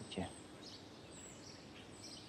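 Faint outdoor background noise with a few faint, high bird chirps. A man's voice ends a short question at the very start.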